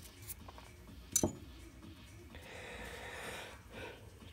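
Small engine parts handled by hand at a bench: one sharp click of metal parts knocking together about a second in, with a few fainter clicks. A soft hiss lasts about a second, a little past the middle.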